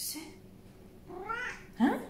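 Domestic cat meowing, begging for a treat from a box of surimi crab sticks held in front of it; a louder, rising call comes near the end.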